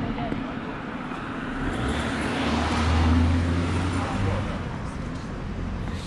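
A car passing on the road: engine hum and tyre noise swell to a peak about three seconds in, then fade.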